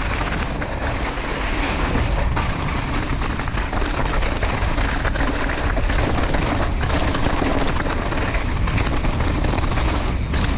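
Mountain bike riding down a rocky dirt trail: knobby tyres rolling over dirt and loose stones, with a steady low rush of wind on the microphone and scattered clatter as the bike hits bumps and rocks.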